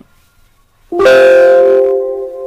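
Windows system alert chime as a save-changes prompt pops up: a chord of several steady tones starts suddenly about a second in and rings on, slowly fading.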